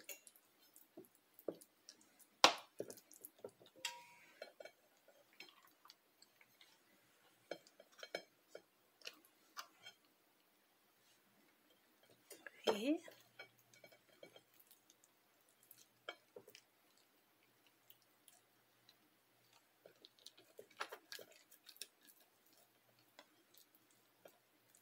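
Quiet scattered clicks and taps of a metal fork and spoon on a ceramic plate and plastic tub while hands roll filling in damp rice paper, with one sharp clink of cutlery about two and a half seconds in.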